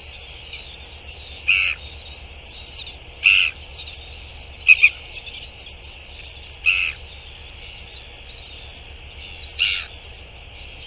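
Birds calling: a short loud call sounds about every one and a half to three seconds, six times in all, two of them in quick succession near the middle. Under it runs a steady wash of fainter high chirping.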